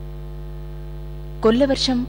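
Steady low electrical hum with a buzz of overtones. About one and a half seconds in, a voice begins loudly, speaking or singing.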